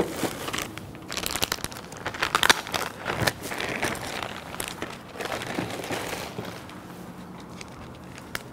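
Plastic packaging crinkling and rustling in irregular crackles as a kukri is pulled out of its wrapping by hand; the crackling dies down near the end.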